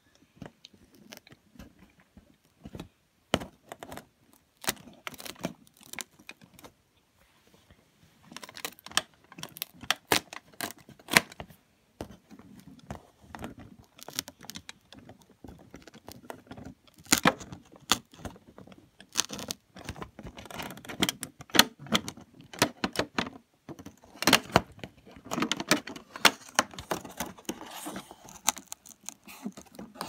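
A cardboard advent calendar being handled and a door pushed and pried open: irregular crackles, clicks and taps of card and plastic tray, coming in dense clusters with short pauses.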